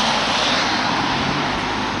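A car driving off along a rain-soaked road: a steady hiss of tyres on wet tarmac, fading slowly as it moves away.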